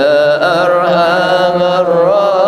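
A man's voice chanting in long, held notes that waver and glide in pitch, in a melismatic religious style.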